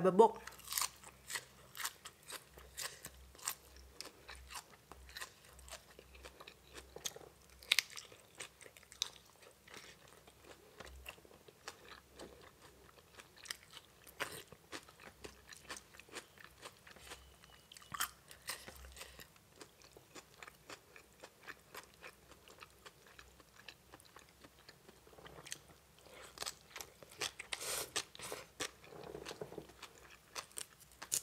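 A person chewing and crunching raw leafy greens and spicy papaya salad: a stream of small sharp crunches and wet mouth clicks, growing busier near the end.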